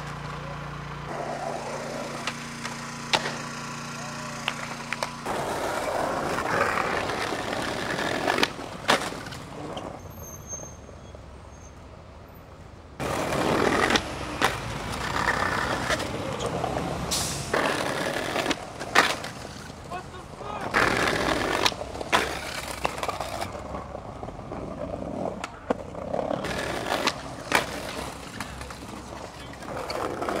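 Skateboard wheels rolling on concrete and brick pavers, broken by repeated sharp clacks of boards popping, landing and hitting the ground.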